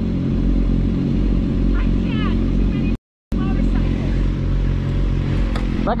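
Sport motorcycle engine idling steadily, with the sound cutting out completely for a moment about three seconds in.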